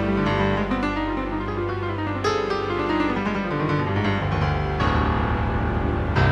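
Piano playing a romantic ballad, a run of single notes over held low notes.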